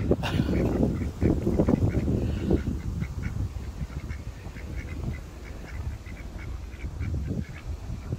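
Ducks quacking close by, loudest in the first few seconds, then a run of soft, short calls.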